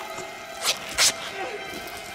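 Two short, loud tearing bursts as a man's cloth shirt is ripped open, the second about half a second after the first. Under them are a man's pained groans and a film score.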